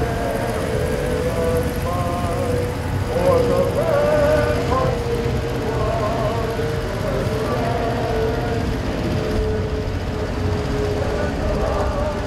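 A group of people singing a slow melody, with held notes that step from pitch to pitch, over a low steady rumble.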